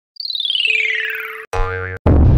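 Electronic channel-intro jingle: a fast string of synthetic blips falling steadily in pitch, then after a sudden break a short buzzy synth note with a wavering pitch.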